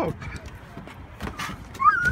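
A child laughing, then a high-pitched squeal that rises sharply near the end.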